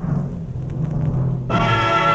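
Orchestral music begins with a low sustained passage. About three-quarters of the way through, the full band comes in loudly.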